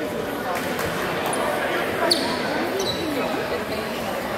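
Sounds of a basketball game in a gym: a basketball bouncing on the hardwood floor and sneakers squeaking, with a sharp squeak about two seconds in. The voices of players and spectators carry on underneath.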